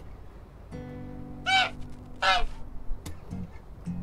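Two loud, short bird calls about a second apart, over an acoustic guitar chord that is struck and left to ring.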